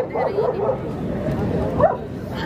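A dog's short vocal sounds over background crowd chatter, the loudest a brief cry rising in pitch near the end.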